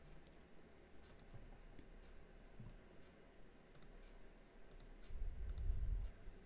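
Faint, sharp clicks at a computer, about six of them spread irregularly over the few seconds. A low rumble rises near the end.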